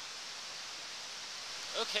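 Steady rushing of a fast-flowing mountain creek, with a man saying "Okay" near the end.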